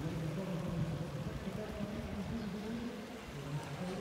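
Outdoor background: a steady wash of noise with faint, distant voices.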